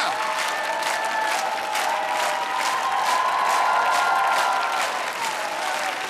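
Studio audience applauding, a dense steady clapping with a few long held tones over it.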